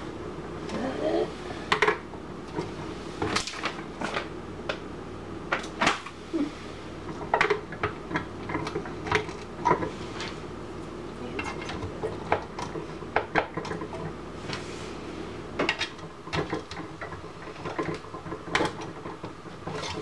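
Hard plastic parts of a party drink fountain being handled and fitted together: irregular sharp clicks, taps and light clatters of plastic on plastic and on the countertop.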